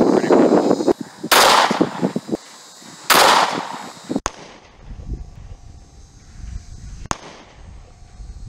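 Two loud 9mm pistol shots, firing full metal jacket rounds, about two seconds apart, each with a short ringing tail. Near the end comes a single sharper, quieter crack.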